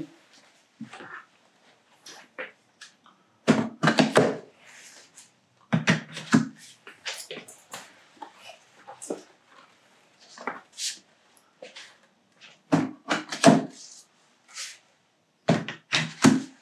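Column sections of JBL PRX One column-array speakers being handled and slotted into their subwoofer bases: a series of irregular knocks and clunks with quiet gaps between.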